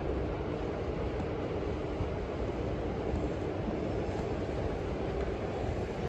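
Steady, even low rumble of city street background noise, with no distinct events.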